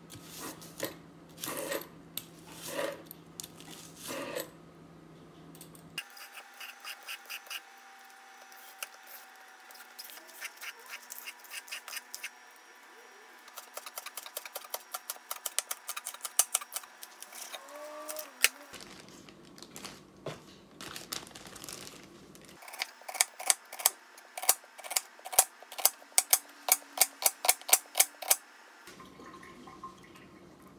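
Kitchen knife slicing spring onions on a wooden cutting board: runs of quick, even chops, about four a second, in two stretches in the second half. A few slower single cuts come near the start.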